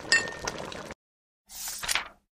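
Sound effect of a spoon clinking against a cooking pot: a light metallic clink at the start that rings briefly and fades out. After a short silence, a brief rushing noise swells and stops near the end.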